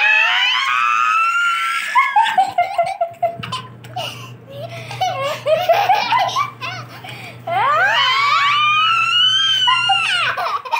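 A woman and a toddler laughing hard together. Long, high-pitched squealing laughs come at the start and again from about two-thirds of the way in, with choppy bursts of laughter in between.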